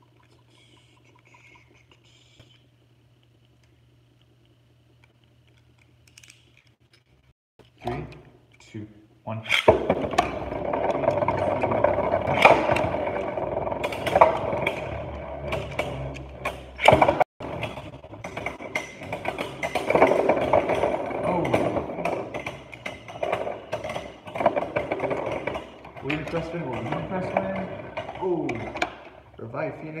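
Beyblade Burst tops spinning and clashing in a clear plastic stadium. After a quiet start, a loud whirring begins about a third of the way in, with many sharp clacks as the tops hit each other and the stadium wall.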